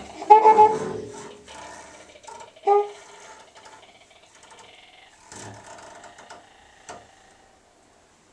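Free-improvised trumpet and bowed double bass: two short trumpet notes, about a second in and near three seconds, over quiet scratchy bowing. The sound thins out with a couple of soft knocks and fades away near the end.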